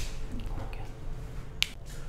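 A single short, sharp click about one and a half seconds in, over a low steady room hum.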